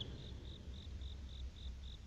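Faint insect chirping: short high chirps repeating about four a second.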